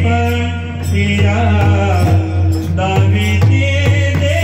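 Devotional kirtan singing: a voice carrying a bending melodic line over a steady low drone, with pakhawaj drum strokes and sharp high strikes keeping the beat.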